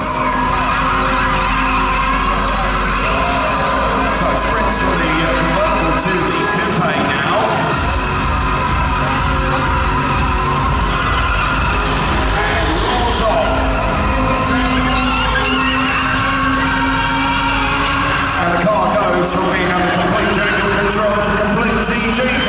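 A Jaguar F-Type drifting, its engine revving and tyres squealing, mixed with loud arena music.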